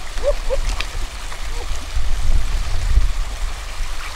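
Stream water running steadily from a small waterfall, with splashing at the water's surface and a heavier low rumble from about two to three seconds in.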